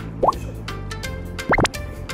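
Background music with two short pop sound effects that slide quickly upward in pitch, a small one about a quarter second in and a louder, higher one about one and a half seconds in.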